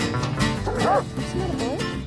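A golden retriever whining and yipping in short cries that rise and fall in pitch, starting about half a second in, over background music.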